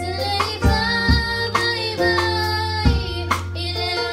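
A youth choir of children and teenagers singing a song together over an accompaniment with a steady bass and a drumbeat.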